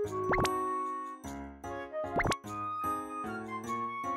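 Light, bouncy background music with quick rising 'bloop' sound effects, one about a third of a second in and another just past two seconds.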